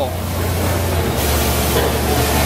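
Coffee roasting machinery running: a steady low hum, joined about a second in by a loud hissing rush of air.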